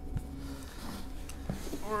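Soft rustling of a fabric sack being lifted out of a cardboard box, with a couple of faint knocks.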